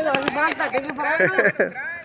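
Voices talking and calling out, with a few sharp knocks near the start.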